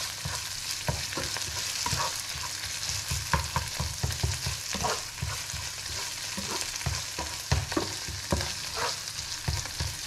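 Beef, onions and green onions sizzling steadily in a frying pan while a spatula stirs them, giving irregular scrapes and light knocks against the pan.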